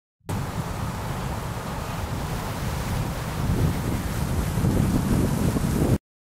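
A steady rushing noise like surf or wind, heaviest at the low end, that starts abruptly and cuts off suddenly.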